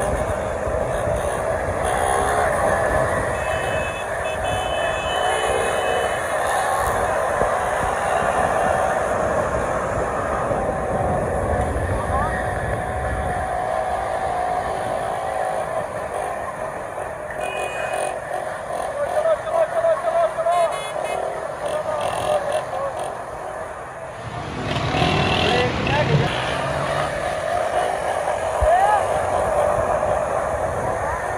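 Small motorcycle engines revving as riders hold wheelies, under a crowd of people shouting and chattering. About two thirds of the way through there is a short lull, then a louder burst of engine noise.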